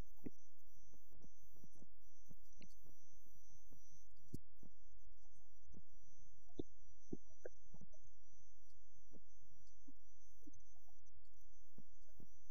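A steady low hum with a faint high-pitched whine above it, dotted with faint scattered clicks; no speech.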